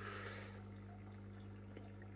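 Faint, steady low hum of an aquarium pump, with a light trickle of water.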